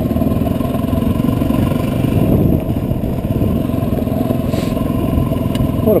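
Dual-sport motorcycle engine running steadily at low speed on a gravel track, with a rattling noise that the rider cannot place and does not think comes from the bike.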